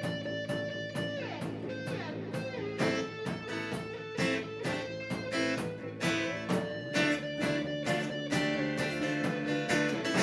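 A live band playing an instrumental passage: strummed guitar, bass and a drum kit keeping a steady beat, with a lead guitar playing held notes that bend in pitch.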